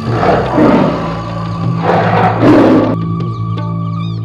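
A lion roaring twice over sustained background music. The second, louder roar comes about two seconds in.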